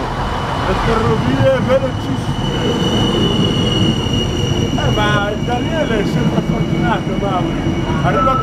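ATR 803 'Blues' regional passenger train moving alongside the platform at close range, a continuous rumble of the train's running gear. A steady high-pitched whine rises out of it a couple of seconds in and fades after the middle.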